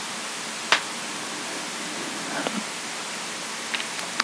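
Steady hiss of background noise in a pause between speech, with one short click about three-quarters of a second in and two fainter ticks later.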